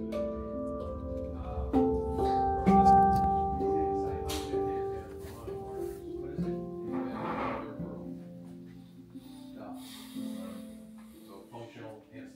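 Handpan being played: single ringing steel notes struck one after another, each fading slowly and overlapping the next, with the loudest playing, including a deep low note, about two to three seconds in and softer notes later.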